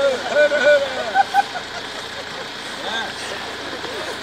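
Indistinct voices of several people talking, busiest in the first second and a half, over a steady background noise.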